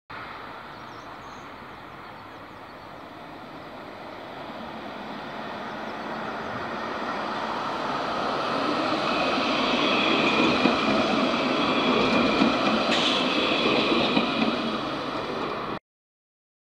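Alstom Citadis tram running up to a stop on its rails, growing steadily louder as it comes close, with a high steady whine joining in about halfway through. The sound cuts off abruptly just before the end.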